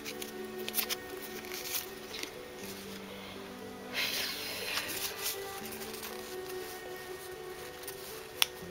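Soft background music of held chords that change every few seconds, with light rustling and clicks of trading cards being handled, and a brief rustle about four seconds in.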